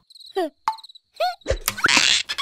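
Cartoon sound effects: a few short, high squeaky chirps and a falling squeak from a small animated larva character, then a low thump and a burst of noise near the end as a character topples over.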